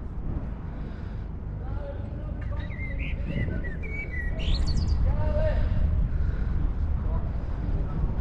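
Small birds chirping a few times, over distant people talking and a steady low rumble.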